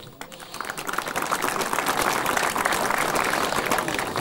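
Crowd applauding, with many hands clapping at once. The applause builds over the first second and then holds steady.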